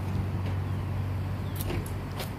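A steady low hum with a few light clicks near the end.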